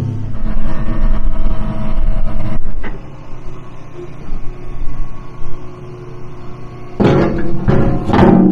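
A wheel loader's diesel engine running steadily under background music. The sound drops sharply in level about three seconds in and comes back up near the end.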